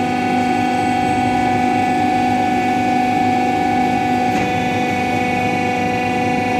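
Hydraulic power unit of a wheel-testing machine running: electric motor and pump giving a steady hum with a high whine that holds level throughout.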